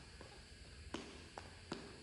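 Sneakers landing on a hardwood gym floor during side skips: a few faint, short thuds about a second in and near the end.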